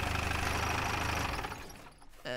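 Open-top jeep's engine running with a steady low rumble as the jeep rolls up, fading away about a second and a half in.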